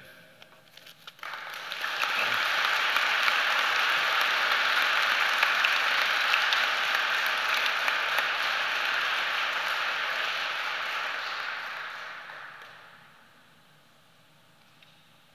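Audience applauding, starting about a second in and fading out near the end.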